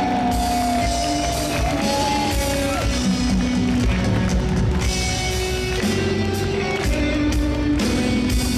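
Rock band playing live through an arena PA: electric guitars and drum kit, with a long held note that bends up and down in the first three seconds.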